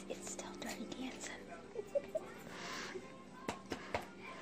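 Faint, indistinct voices over quiet background music with steady tones, broken by scattered small clicks and a brief hiss about two and a half seconds in.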